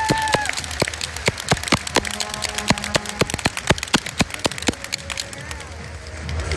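Crowd of spectators clapping, sharp irregular claps several times a second, with a held tone that stops about half a second in and brief bits of voice or music.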